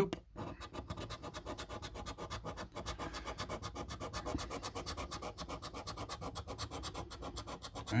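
Scratch card's silver latex coating being scratched off in quick, even back-and-forth strokes, a steady rapid rasping.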